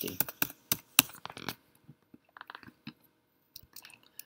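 Computer keyboard keys and mouse buttons clicking: a quick scatter of sharp taps in the first second and a half, the loudest about a second in, then a few fainter taps later.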